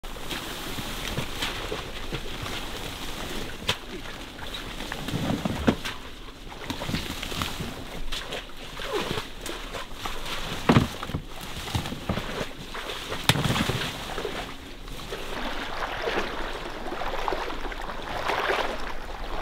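People wading and pushing through reeds and brush in a marsh: rustling stems, footsteps and water sloshing, with a few sharp knocks.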